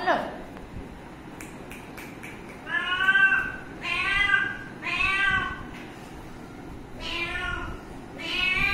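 Cat meowing repeatedly: a short rising call at the start, then four drawn-out meows of about half a second each, three of them a second apart and the last a couple of seconds later.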